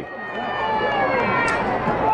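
Stadium crowd cheering and yelling, many voices held together and slowly sinking in pitch as the cheer dies down.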